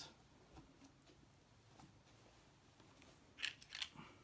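Push pins being pressed through felt into a wooden board: two short crisp sounds close together near the end, otherwise near silence.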